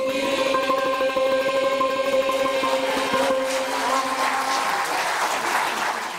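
Mixed choir holding a long final chord that fades about four and a half seconds in, while audience applause rises under it and takes over.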